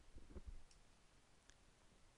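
Near silence: faint room tone with a couple of soft clicks from the computer the tutorial is recorded on, under a second apart, after some soft low bumps at the start.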